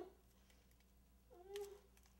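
A woman's muffled, voice-like cry through a duct-tape gag: one short moan about a second and a half in.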